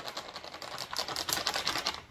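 Powdered fried-chicken flour mix poured from a crinkly plastic bag onto a metal sheet pan: a fast, dense run of small ticks and rustles from the bag and the falling powder.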